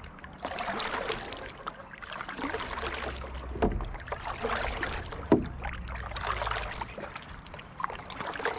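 Double-bladed kayak paddle strokes in the water beside a paddle board, alternating sides: a swishing splash roughly every two seconds. Two sharp knocks come in the middle, the louder one just past five seconds.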